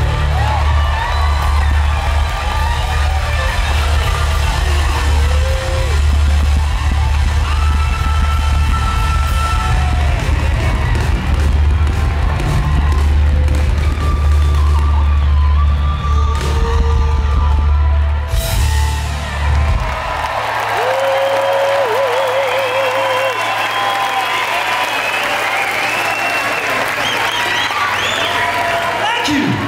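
A live rock band holding a closing chord over a steady deep bass note while the audience cheers. About twenty seconds in, the band stops and the crowd keeps cheering and shouting.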